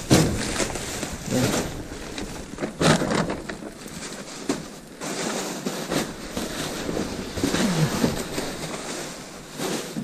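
Plastic bags and plastic wrapping rustling and crinkling as gloved hands dig through a dumpster's contents, with irregular crackles and a few knocks.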